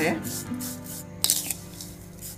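A silicone spatula stirring and scraping a dry, crumbly mix of grated dry coconut, poppy seeds, ground dry dates and rock sugar around a plastic bowl, in irregular rubbing strokes.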